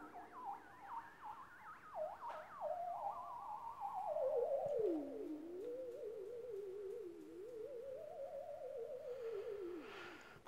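Moog Werkstatt synthesizer played theremin-style, its pitch and volume set by a hand moving over the Koma Kommander's range sensors. A single wavering tone leaps and swoops high for the first few seconds, then slides down lower and keeps wobbling before fading out near the end.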